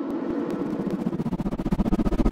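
Intro logo sound effect: a rumbling, glitchy sting that swells steadily louder, with a fast stutter running through it and a deep rumble joining about two-thirds of the way in.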